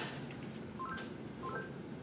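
Two short electronic beeps, each stepping up from a lower note to a higher one, about three-quarters of a second apart, over faint room tone.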